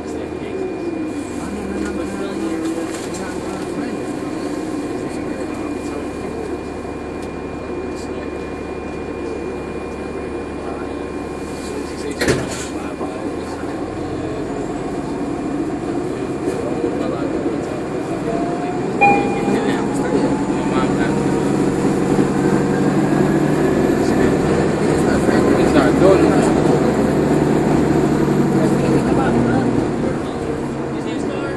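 Cabin sound of a 2014 NovaBus LFS articulated hybrid bus (Cummins ISL9 diesel with Allison EP 50 hybrid drive) underway: a steady drone, a sharp click about twelve seconds in, then a whine rising in pitch as the bus pulls away and speeds up, getting louder through the second half.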